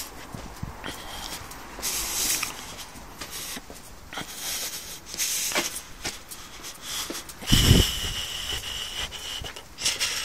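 A handheld phone microphone carried by someone walking, picking up scattered footsteps and handling knocks. A louder low thump on the microphone comes about seven and a half seconds in.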